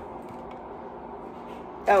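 Quiet room tone: a steady faint background with no distinct sounds, broken near the end by a woman's short "oh".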